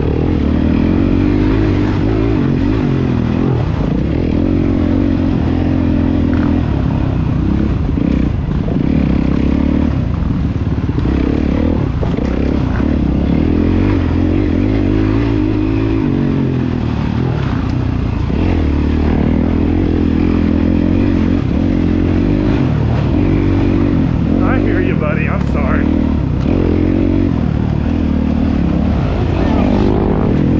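Dirt bike engine revving up and down as it is ridden, its pitch rising and falling every few seconds with throttle and gear changes.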